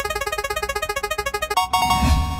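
Synthesized prize-wheel spinning effect: a fast run of short electronic blips, about ten a second and slowing slightly, then a bright held chime near the end as the wheel lands.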